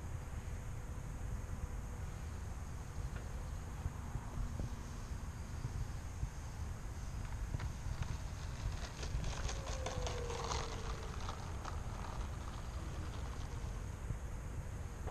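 Wind rumbling on the microphone, with the faint whine of a distant electric RC P-51D's motor that drops in pitch as the plane passes, about ten seconds in.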